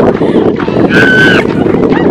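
Wind rumbling loudly on the camera microphone, with a person's short high held shout about a second in.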